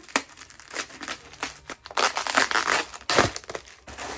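Plastic poly mailer bag crinkling and rustling as it is handled and opened, in irregular crackles that are loudest about two seconds in and again just after three seconds.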